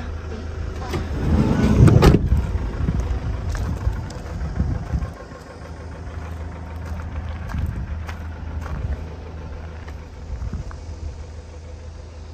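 Van engine idling with a steady low hum. A loud handling clatter builds about a second in and ends in a sharp knock at about two seconds; a few light clicks follow.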